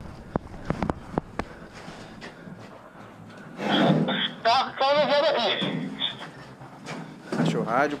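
A few sharp knocks and clicks in the first second and a half, then a loud, garbled man's voice for about two and a half seconds, its words unintelligible, in police body-camera audio.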